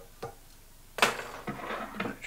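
Small metal fly-tying tools being handled at the vise: a light click, then a sharp clack about a second in, followed by a second of rustling and a few lighter clicks.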